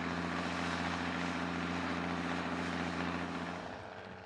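1966 Versatile D-100 tractor's six-cylinder Ford industrial diesel engine running at a steady speed, fading out near the end.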